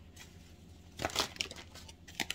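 Tarot cards handled on the table: a brief papery rustle with a few light clicks about a second in, then a couple of softer ticks near the end.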